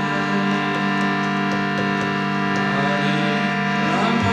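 Kirtan music: a harmonium holding a steady, unbroken chord, with a few faint sliding notes near the end.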